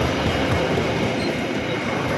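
Passenger coaches of the Commuter Line Ekonomi Bandung Raya train rolling past close by: a steady rumble and rattle of wheels on the rails.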